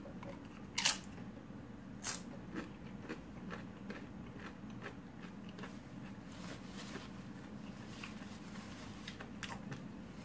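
A tortilla chip crunched in a bite just under a second in, then a quieter crunch and faint, irregular crunching as it is chewed.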